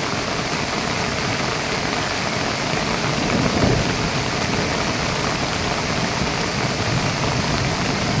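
Steady rushing noise of a muddy river in spate, mixed with heavy rain falling.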